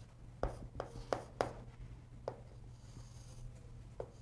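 Chalk striking and drawing on a chalkboard: a quick run of short, sharp strokes in the first second and a half, then one more a little after two seconds, over a steady low room hum.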